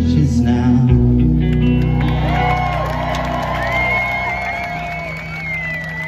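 A live band's closing chord on guitar and bass rings out at the end of a song, with drums loud for the first second or so. From about two seconds in, audience whoops and a long, wavering whistle rise over it.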